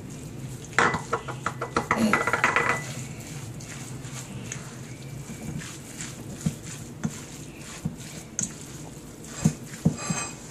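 A silicone spatula stirring a wet mix of chopped salmon and peppers in a stainless steel bowl: irregular scraping and light knocks against the metal. The stirring is busiest in the first few seconds, then turns to scattered knocks.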